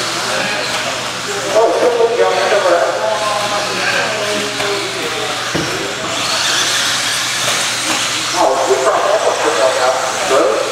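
1/10-scale electric RC buggies with 17.5-turn brushless motors racing on a dirt track: a steady high hiss and whir, with a single knock about five and a half seconds in, under people's voices.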